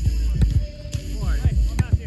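Low, buffeting rumble of wind on the microphone, with faint distant voices.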